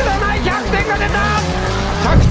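Background music with a steady beat, mixed with a racing car's engine and tyre squeal from a drifting run.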